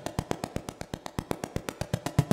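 Arturia MiniBrute 2S analog synthesizer playing a preset step-sequencer pattern at 120 BPM: a fast, even run of short, sharp, clicky notes, roughly ten a second.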